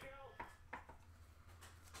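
Two quick clicks of stiff chromium trading cards being handled and flipped on a stack, soft against faint talk and a steady low hum.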